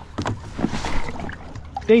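Shallow river water sloshing and splashing around a dog wading beside a paddleboard, a short burst of splashing about half a second in.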